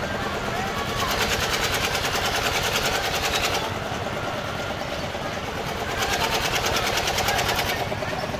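Fairground crowd chatter under a rapid, even mechanical rattle from the tower ride's machinery. The rattle comes in two spells of two to three seconds each, about a second in and again about six seconds in.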